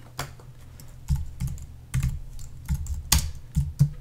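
Typing on a computer keyboard: a handful of separate keystrokes at uneven spacing as a short command is entered.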